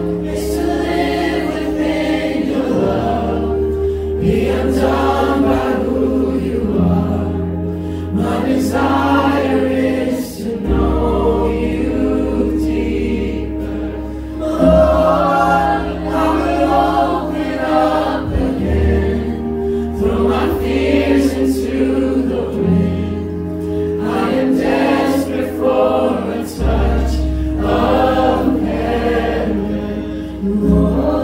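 Live worship band playing a slow song: male voices singing with electric guitar, electric bass and acoustic guitar, over long held bass notes.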